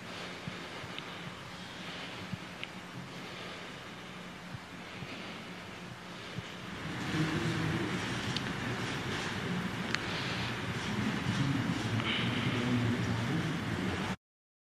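Indistinct murmur of a seated crowd of reporters in a large echoing hall, over a steady low hum, with a few sharp clicks. The murmur grows louder about seven seconds in.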